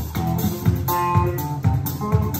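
Live blues-rock band playing an instrumental passage: electric guitar holding and bending notes over bass guitar and a steady drum beat, with no vocals.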